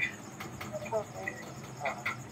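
A steady high-pitched chirping trill, like insects, with brief faint bits of speech from the video call.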